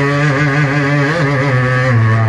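Man singing a naat (Urdu devotional poem in praise of the Prophet) into a microphone, holding one long note that wavers and bends slightly in pitch about halfway.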